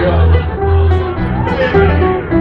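Irish folk band playing live, with strummed guitars over low, sustained bass notes in an instrumental gap between sung lines.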